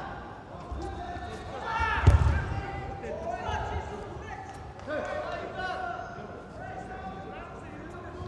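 People calling out in a large, echoing hall, with one loud dull thump about two seconds in.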